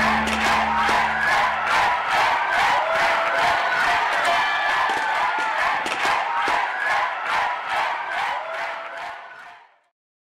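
A large crowd cheering and whooping, over the last held chord of the music, which ends about two seconds in. Rhythmic clapping keeps time under the cheers, and it all fades out near the end.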